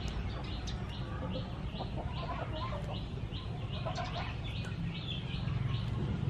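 Chickens clucking, with a short high chirping call repeating about three times a second, over a steady low hum.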